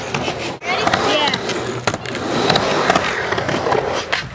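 Skateboard wheels rolling over the concrete of a bowl, a steady rough rumble, with a sharp clack near the start and another a little under two seconds in.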